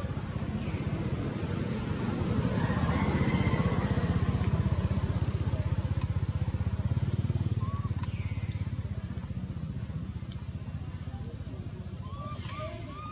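A motor engine running, its low pulsing rumble growing louder a couple of seconds in and then slowly fading, as of a vehicle passing.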